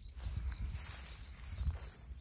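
Wind rumbling on the microphone outdoors, with faint rustling and a short louder bump near the end.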